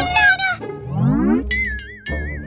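Cartoon sound effects: a short vocal exclamation trails off, then a rising glide sweeps up in pitch for under a second, followed by a high warbling tone that wavers up and down.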